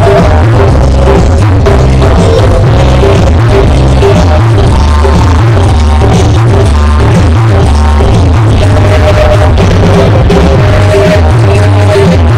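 Loud electronic dance music with a heavy, continuous bass beat and a repeating synth melody.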